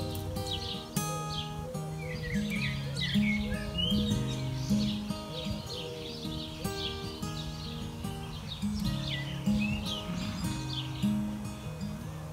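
Acoustic guitar playing an instrumental passage, with notes ringing on and occasional strums. Birds chirp over it, busiest in the first half and again towards the end.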